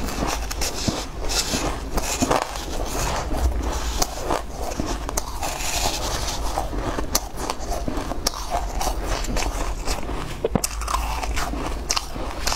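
Close-up crunching and biting of shaved ice, a dense run of crisp crackles, mixed with a metal spoon scraping and scooping through the icy flakes in the bowl.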